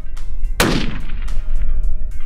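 A single rifle shot from a 6.5 PRC bolt-action rifle, about half a second in, with a short echo trailing off after it.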